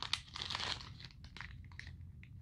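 Thin clear plastic bag crinkling faintly as it is opened by hand to take out a charging cable, the crackles thinning out after the first second.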